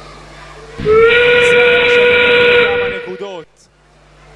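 Steam-whistle sound effect played by a FIRST Robotics Competition (Steamworks) field: one long whistle of about two and a half seconds, starting about a second in. It is the signal that the last 30 seconds of the match, the endgame climb period, have begun.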